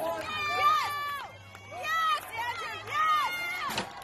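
Excited shouting and yelling from several voices, with long high-pitched cries held and then dropping off.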